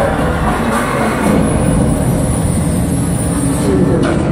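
Loud arena concert sound with deep, rumbling bass and crowd noise, steady throughout and without a clear tune or voice.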